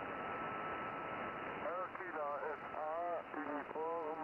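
Yaesu HF transceiver's receiver on the 40 m band giving steady static hiss, cut off above about 3 kHz by the single-sideband filter, with a faint steady whistle from a carrier for the first second or so. From about two seconds in, a distant station's voice comes up through the noise, weak and mixed with static: the reply after the microphone is handed over.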